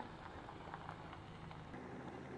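Faint outdoor background with the low, steady hum of a slow-moving car engine and a few faint ticks. The background changes abruptly near the end.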